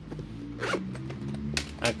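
Gold metal zipper and faux-leather body of a cosmetic bag being handled, with two short rasps, one a little under a second in and one near the end.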